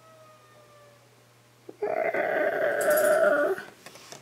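Tabby cat giving one long, drawn-out meow that starts about two seconds in and lasts nearly two seconds.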